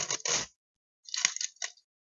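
Close handling noises as beads are worked onto craft wire: a short cluster of clicks and rustles at the start, then another a little after a second in.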